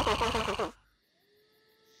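A cartoon character's voice with a shaky, wobbling pitch lasts under a second and cuts off. It is followed by near silence with a few faint, thin, steady tones.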